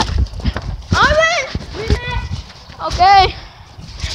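Young children's high voices calling out in three short, rising-and-falling exclamations about a second apart, with low rumbling thumps from a phone being jostled on a moving swing.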